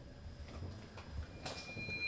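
Faint footsteps in a quiet elevator car as people step out through the open doors, over a low hum. A faint, high, steady tone begins near the end.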